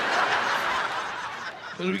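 Live audience laughing together, the laughter fading away over about a second and a half.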